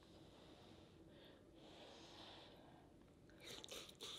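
Near silence: room tone, with faint soft mouth sounds near the end as a sauce-coated piece of seafood is bitten into.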